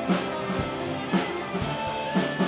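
Live rock band playing: electric guitars over a drum kit keeping a steady beat of about two strikes a second.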